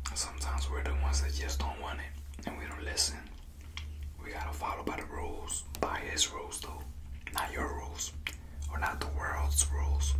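A man whispering close to the microphone through most of the stretch, with a few sharp clicks and a steady low hum underneath.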